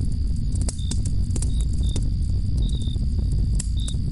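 Night-time ambience of crickets chirping in short, high calls, over a steady low rumble with scattered sharp clicks.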